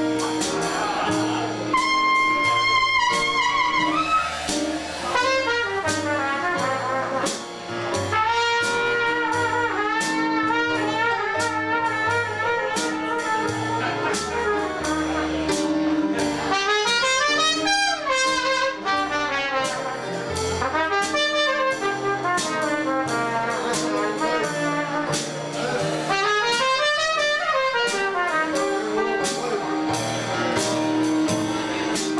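Trumpet playing a jazz chorus with wavering, vibrato-laden notes and a few sliding runs up and down, over a small traditional jazz band with upright bass and drums keeping a steady beat.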